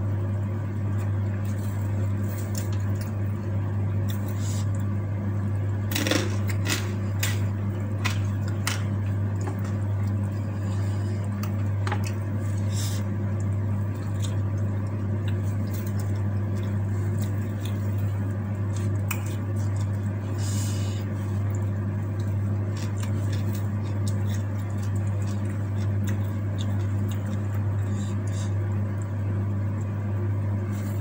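Close-up eating sounds: chewing and small mouth clicks, with a cluster of crisp crunches about six to nine seconds in and a few more later. A steady low hum runs underneath the whole time.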